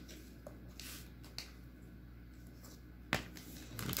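Trading cards being handled and slid into sleeves: faint rustling with a few light clicks, and a sharper tap about three seconds in as a card is set down on the playmat.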